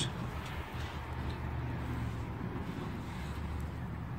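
Ford 351 Windsor V8 idling steadily, a low even rumble.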